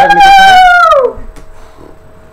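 A loud, high-pitched howl held for about a second, its pitch dropping away at the end.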